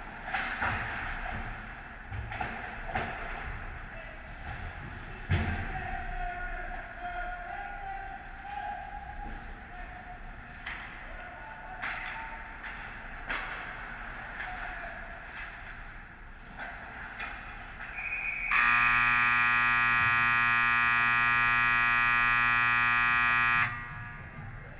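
Ice hockey rink sounds of skates on ice and scattered sharp knocks of sticks and puck, then, about three-quarters of the way through, the arena's game buzzer sounds one loud, steady electronic tone for about five seconds and cuts off.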